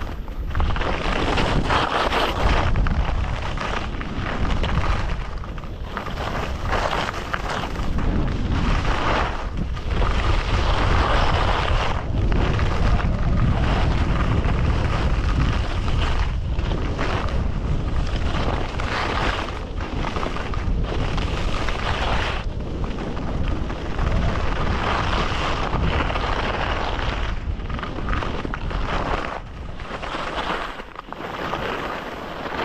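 Wind buffeting a GoPro Hero11's microphone as a skier goes downhill at about 25–30 km/h, with a deep rumble under the hiss of skis sliding and scraping over snow. The hiss rises and falls every few seconds.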